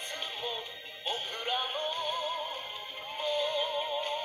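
Anime ending theme song: a singer over band accompaniment, holding long notes with vibrato in the second half, played back through a television speaker.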